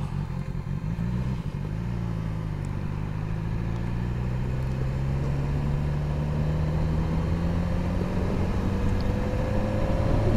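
BMW S1000XR's inline-four engine pulling steadily, its pitch and loudness rising slowly as the bike gently picks up speed, heard from the rider's seat.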